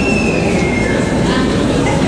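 Steady murmur of a crowd of many people talking at once in a church. A thin, high whistling tone sounds over it and slides slightly down in pitch during the first second.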